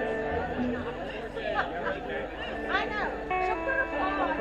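Amplified electric guitars and bass sounding loose held notes between songs, with people chattering over them.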